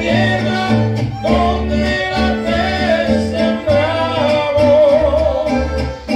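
Mariachi band playing live: violins and trumpet carrying a melody over strummed guitars and a pulsing bass line.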